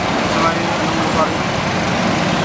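Busy city street traffic noise with a steady low engine hum from nearby vehicles, under brief fragments of speech.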